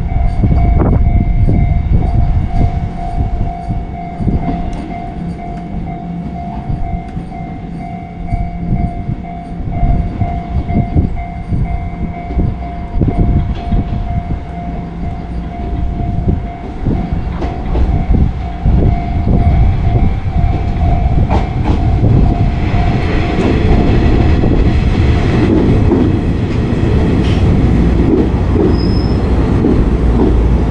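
A Nishitetsu electric commuter train approaches and pulls in along the platform. Its running noise grows over the last third, with brief high squeals near the end as it brakes. Before it arrives a steady ringing tone carries on for about twenty seconds, over gusty wind rumble on the microphone.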